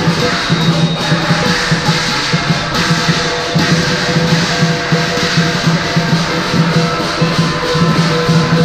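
Southern Chinese lion-dance percussion playing without a break: a big drum beaten in a fast, driving rhythm, with a gong ringing and cymbals clashing over it.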